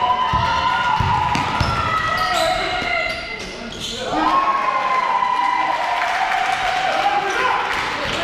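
Basketball bounced on a hard sports-hall floor several times in the first two seconds, under long drawn-out shouted calls; about halfway, one voice rises into a long held call.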